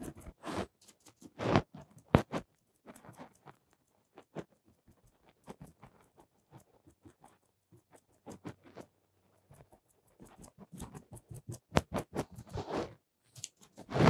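A torn piece of sponge pounced over and over against a canvas, dabbing on acrylic paint: a quick, irregular run of soft taps and crackly dabs, with a few louder ones about two seconds in.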